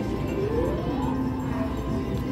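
Electronic music and tones from casino gaming machines, with a short rising tone about half a second in as the video poker machine deals the drawn cards.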